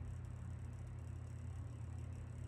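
Room tone: a steady low hum with faint hiss, and nothing else happening.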